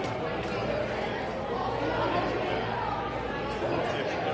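Many people talking at once in a large hall: indistinct chatter with no single voice standing out.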